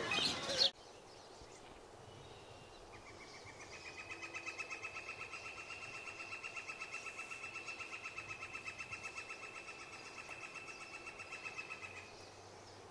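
Bird chirps that cut off abruptly less than a second in. From about three seconds in, a faint animal's high-pitched trill pulses steadily at one pitch for about nine seconds.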